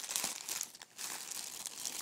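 Plastic packaging crinkling and rustling as it is handled, with a brief lull a little under a second in.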